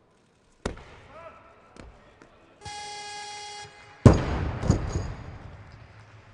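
An electronic buzzer sounds one steady tone for about a second, the referee's down signal, and then a loaded barbell is dropped onto the lifting platform with a loud crash and a couple of smaller bounces, ringing out with echo. A sharp knock comes less than a second in.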